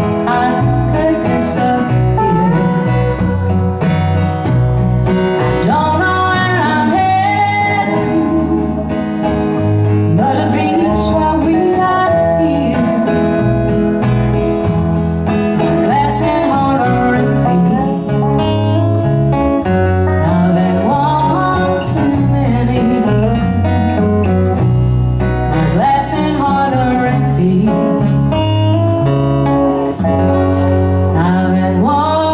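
Live country band playing: a dobro's gliding slide notes over acoustic guitar and electric bass.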